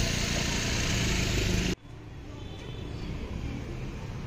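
Steady road traffic noise, with motorbike and car engines in the mix. It cuts off abruptly about two seconds in, leaving a quieter outdoor background.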